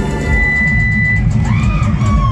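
Live cumbia band playing loudly, bass and drums carrying a steady beat, with a high note held for about a second and a swooping high sound near the end.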